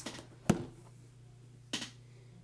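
Two sharp clicks about a second and a quarter apart, the first much louder, from hands handling makeup, over a faint steady low hum.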